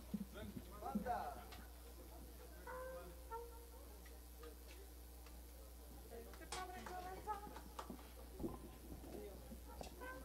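Faint background chatter of a few voices in a lull between songs, with scattered light knocks over a low steady hum.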